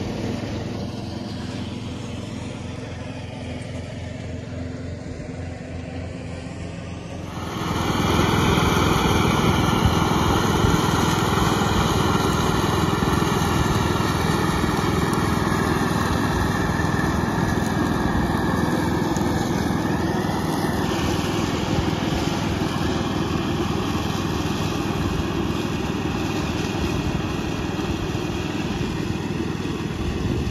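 Craftsman LT2000 lawn tractor's engine and mower deck running under load while cutting tall Timothy grass and clover; it gets much louder about seven seconds in, and its high whine drops a little in pitch about twenty seconds in. The tractor is not doing very well in the super long Timothy.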